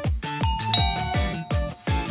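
Background music with a steady electronic beat of about two kick drums a second. A bright two-note chime comes in about half a second in and rings on for about a second.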